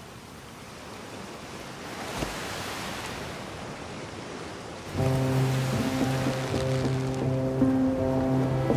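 Rushing water, like waves washing past a boat, growing louder over about five seconds. Then background music comes in suddenly with held low notes.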